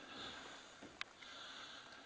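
Faint sniffing breaths through the nose, close to the microphone, with a single small click about a second in.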